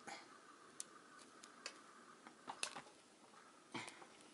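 A few faint, scattered clicks over near silence as fingers handle a short piece of model railway track and pull a fishplate (rail joiner) off the rail end.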